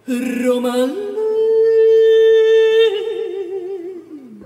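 Solo operatic female voice singing unaccompanied, with the orchestra silent: a low phrase, then a rise about a second in to a long held high note, which turns into a wide, slow vibrato and slides down near the end.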